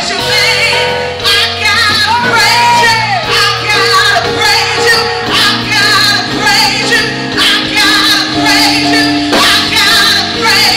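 A woman singing a gospel worship song through a microphone with wavering held notes, backed by live keyboard and a drum kit.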